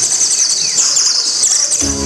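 Rapid high bird chirping, repeated many times a second. Near the end, instrumental backing music comes in with a bass line and sustained notes.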